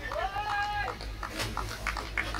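A single long, high-pitched celebratory cry from a fielder as the batsman is bowled. It rises, holds and falls, and is followed by a few sharp hand claps.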